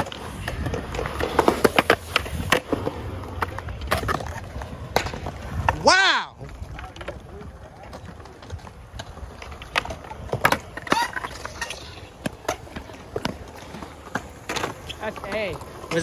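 Skateboard wheels rolling on a concrete bowl, with sharp clacks of boards hitting the ground. A short falling shout about six seconds in, after which the rolling stops and only scattered board clacks remain.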